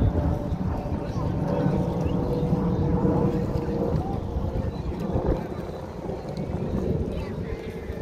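Wind rumbling on the microphone over the chatter of a busy beach crowd, with a faint steady hum.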